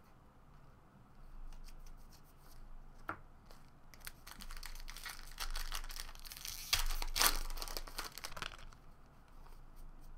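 Foil wrapper of a Bowman Draft baseball card pack being torn open and crinkled by hand. Light rustling about a second in builds to dense tearing and crinkling, loudest past the middle, then dies down near the end.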